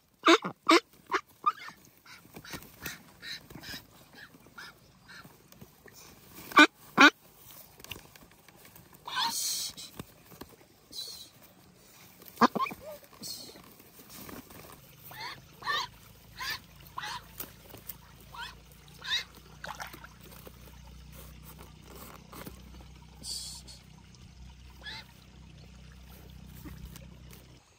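Ducks quacking: a quick run of loud quacks at the start, then scattered single calls and a cluster of quacks in the second half.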